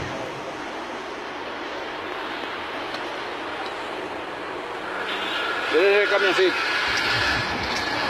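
Steady traffic noise from vehicles on a busy city road, an even rushing sound that grows a little louder about five seconds in.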